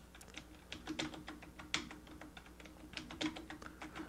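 Typing on a computer keyboard: a quiet run of irregular keystrokes, entering a name into a Windows account setup.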